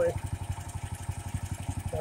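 Bearcat SC-3206 chipper shredder's 18 hp Duramax gas engine running steadily with a rapid, even beat, with no wood being fed through.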